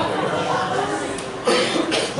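Audience in a hall murmuring during a lull on stage, with a sudden cough about one and a half seconds in.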